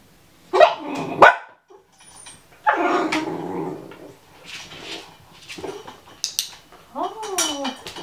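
Puppy yelping, barking and whining in short bursts: a loud burst about half a second in, another around three seconds in, and a whine that rises and falls near the end.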